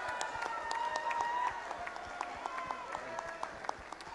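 Applause from the audience and people on stage: many scattered hand claps over the murmur of crowd voices.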